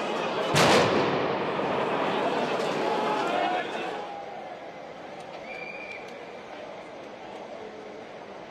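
Street-protest crowd noise with a single loud bang less than a second in, over a dense din of voices. From about halfway the crowd noise is quieter and more distant, with the odd voice rising out of it.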